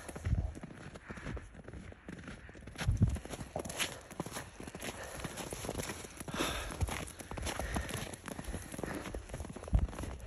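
Footsteps crunching in snow on a walk, with the phone rubbing and knocking against a jacket, and a couple of louder bumps about three seconds in and near the end.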